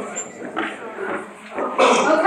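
Indistinct chatter of people in a lecture hall, then a louder voice starting near the end.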